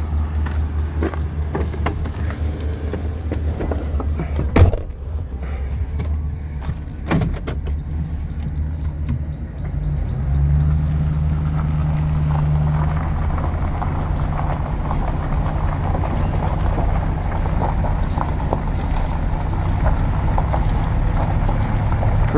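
Pickup truck engine idling, with a few clicks and a loud door-shut thump about four and a half seconds in. From about ten seconds the truck pulls away and drives over gravel with a steady engine drone and tyre noise.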